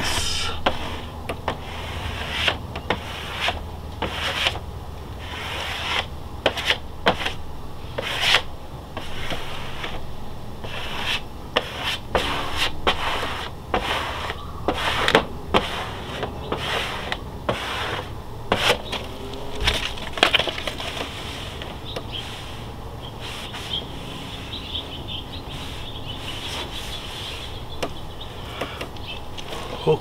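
Hand-held plastic squeegee scraping and rubbing across a wet vinyl decal on a trailer's smooth wall, in short irregular strokes that press the soapy water out from under it. The strokes come thick and fast at first and thin out near the end.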